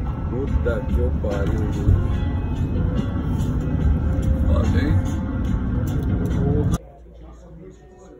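Road noise inside a moving vehicle, a loud steady low rumble with indistinct voices over it. It cuts off suddenly about seven seconds in, giving way to the much quieter sound of a shop interior.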